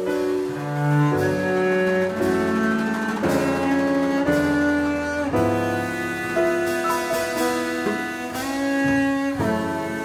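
Double bass played with the bow: a slow melodic line of sustained notes, each held for about half a second to a second before moving to the next.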